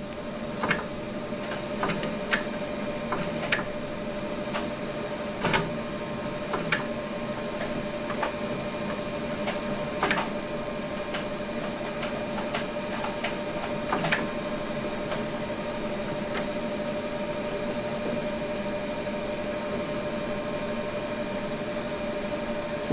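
Mammography unit running with a steady electrical hum, with scattered sharp clicks over the first fifteen seconds or so as the compression paddle is advanced up to about 40 lb of force.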